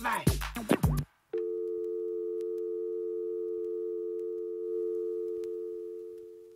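Electronic dance track with a beat cuts off abruptly about a second in; after a brief gap a steady telephone dial tone sounds, held unchanged and beginning to fade near the end, over faint vinyl surface clicks.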